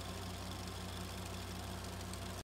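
Pickup truck engine idling, a low steady hum with a faint regular pulse.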